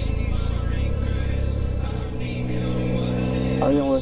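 Background music over a Triumph Speed Triple 1050's three-cylinder engine running on the move. The engine's low pulsing eases off about a second in, leaving steady music tones, and a man's voice starts near the end.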